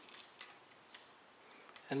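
Two faint metal ticks as an adjustable pushrod measuring tool is slowly pulled out of a small-block Chevy cylinder head.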